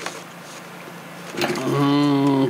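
Faint rustle and handling of a thin mylar sheet being pressed into a wheel-well hole in a balsa wing, with one small click near the start. About one and a half seconds in, a man's voice takes over with a long, steady hum at one pitch.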